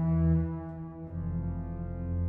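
Hauptwerk virtual pipe organ playing held chords over a deep pedal bass. The harmony changes about a second in, with a dip in loudness, and a new, louder low pedal note enters near the end.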